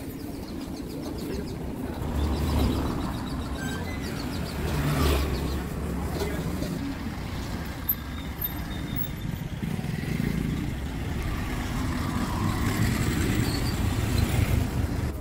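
Cars passing along a street, their engines a low rumble that swells and fades several times, loudest near the end.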